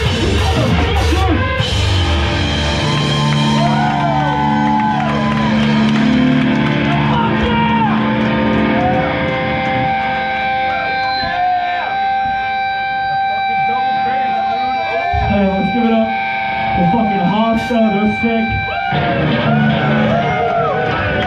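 A hardcore band's full-band crash ends a song in the first second or two, then amplified electric guitars ring on with held notes and a steady feedback tone from about halfway until near the end. Voices shout over it.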